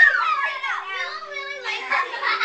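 Children playing, their high voices shouting and squealing over one another in unclear words, with a faint steady hum underneath.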